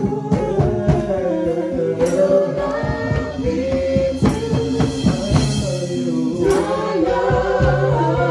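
Voices singing a gospel-style worship song together, with percussion beating along.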